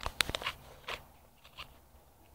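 Handling noise close to the microphone: a quick cluster of sharp clicks and knocks, then a softer click about a second in and another near the end.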